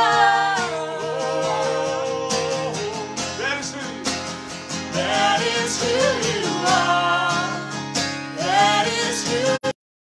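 Acoustic guitar strummed as accompaniment to a woman singing a worship song, with a man's voice joining in. The sound cuts out completely for a moment near the end.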